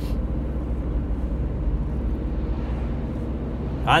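Steady low rumble of engine and road noise inside a van's cab while driving.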